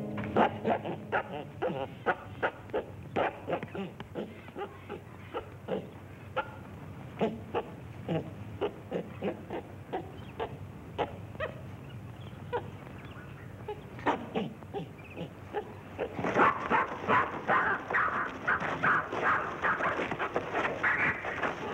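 Chimpanzee chattering and screeching in a quick, irregular run of short calls, growing louder and more frantic over the last few seconds as it is caught in a thrown net.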